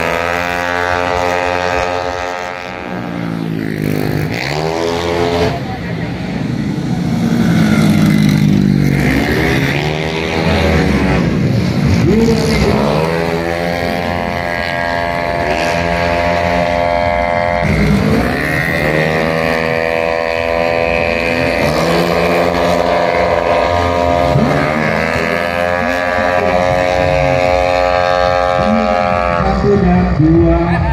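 Racing 130cc automatic scooters with single-cylinder engines revving hard as they pass, several times over. The engine note climbs as they accelerate and drops as they back off.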